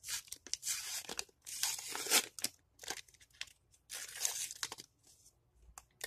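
A small handmade paper packet being torn open and unfolded by hand: paper crinkling and tearing in three main bursts, with small rustles and clicks between them.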